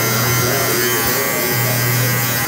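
Electric hair clipper fitted with a one guard running steadily as it cuts the faded side of a head: a constant motor buzz with a low hum. The low hum dips briefly a little past halfway, then comes back.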